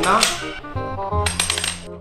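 A coin spinning and rattling on a wooden floor, with a run of quick metallic clicks and a high ring in the second half, over background music.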